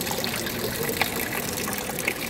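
Fountain water running steadily into its stone basin, a constant splashing trickle.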